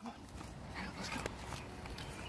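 Pug puppy giving a short, high whimper about a second in, over a steady background hiss, with a sharp click shortly after.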